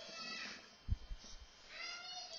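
Whiteboard marker squeaking against the board in short strokes, with a soft thump or two about a second in.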